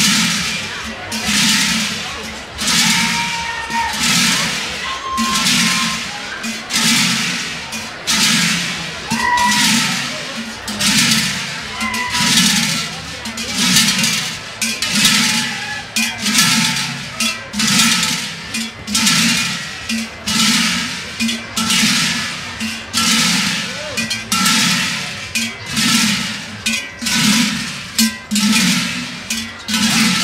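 Large brass carnival bells (Schellen), strapped at the hip of a group of Tyrolean Schellenschlager, swung in unison and clanging together in a steady rhythm about once a second.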